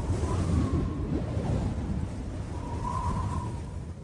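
The tail of a channel intro's music and sound effects: a low rumble with a faint wavering tone, fading out toward the end.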